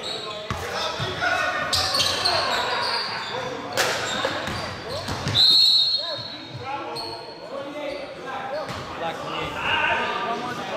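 A basketball bouncing on a gym's hardwood floor, with sneakers squeaking and players calling out, echoing in the hall.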